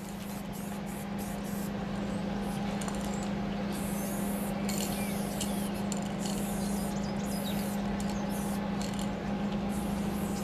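Aerosol spray-paint can hissing in short repeated bursts as white outlines are sprayed on, over a steady low hum.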